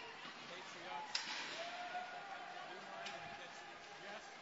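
Ice hockey rink crowd noise, with one sharp crack about a second in from play along the boards, and a voice holding a call for about a second and a half.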